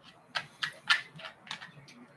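Laptop keyboard keys being tapped: about six uneven clicks over a second and a half, the loudest near the middle.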